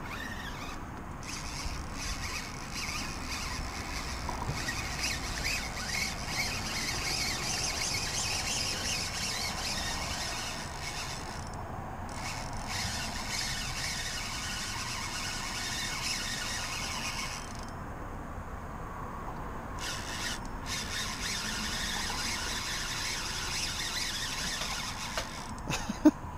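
Spinning reel's drag squealing as a hooked fish pulls line off, in long runs with a short break about 12 seconds in and a longer pause from about 17 to 20 seconds in.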